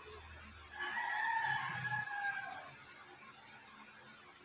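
A rooster crowing once, a single held call of about two seconds that falls slightly in pitch at the end.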